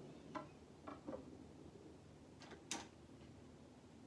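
Light clicks and taps from hands working a portable suitcase record player over a quiet room: three in the first second or so, then a quick run of three nearly three seconds in, the last the loudest.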